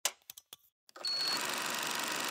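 VHS camcorder-style sound effect: a few quick mechanical clicks like a tape deck engaging play, then steady tape hiss with a short high beep about a second in.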